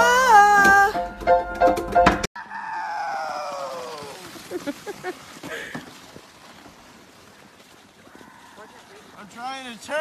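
Upright piano played with a voice singing along, cut off abruptly about two seconds in. After the cut a drawn-out falling cry, then quiet outdoor sound with small scuffs, and near the end a person on a sled yelling in a run of rising and falling cries.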